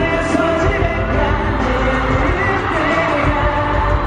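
K-pop song performed live in an arena: a male singer into a handheld microphone over loud, steady backing music, heard from the audience.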